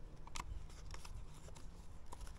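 A few faint small clicks and handling noises as a screwdriver and a strip of cardboard are worked against the ignition pickup coil and flywheel of a pit bike engine, setting the pickup's gap to the cardboard's thickness.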